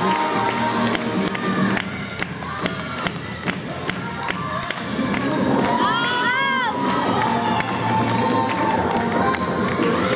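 Spectators, many of them children, cheering and shouting over the routine's music, which has a steady beat. About six seconds in, a high swooping sound rises and falls once.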